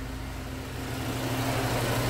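Mercedes-Benz C250's engine idling steadily under an open hood.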